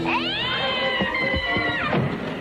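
A possessed woman's high, cat-like shriek that sweeps sharply upward, is held for nearly two seconds and then breaks off, with a few low thumps of a struggle beneath it.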